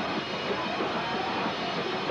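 Post-hardcore band playing live: distorted electric guitars and drums running together as a dense, steady wall of noise.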